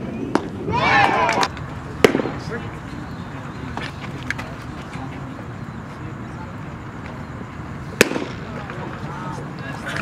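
Baseball-field background noise with a short shout about a second in, and two sharp cracks of a baseball impact, one about two seconds in and a louder one near the end.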